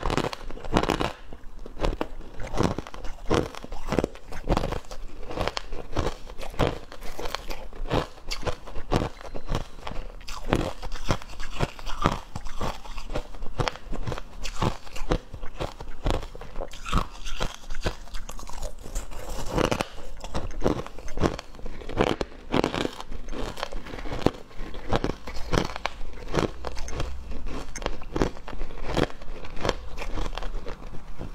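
A person biting and chewing crushed ice: a continuous run of sharp crunches, about two or three a second.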